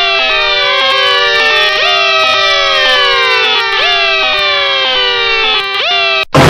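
A loud, harsh electronic noise made of many siren-like tones layered over one another, most of them sliding down in pitch and jumping back up about once a second, over a steady lower tone that breaks off in a regular beat. It is a deliberately ear-splitting 'punishment' noise.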